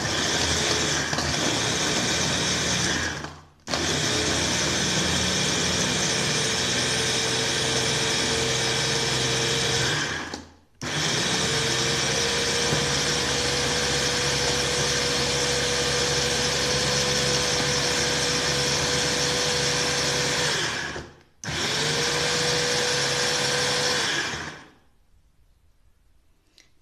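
Electric mini food chopper grinding dry biscuits into crumbs, its motor running with a steady whine in four runs of a few seconds each, split by brief stops. It is switched off a second or two before the end.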